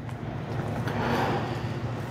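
Outdoor wind blowing, swelling and easing about a second in, over a steady low hum.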